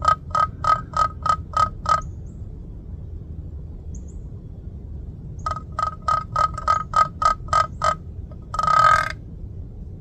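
Wooden turkey box call worked by hand, its paddle scraped across the box in yelps: a run of about seven short, raspy notes at about four a second, a pause of a few seconds, then a second run of about nine yelps and one longer, louder note near the end.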